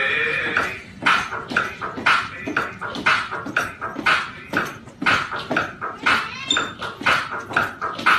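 Small dogs barking over and over in a face-off, about two sharp barks a second.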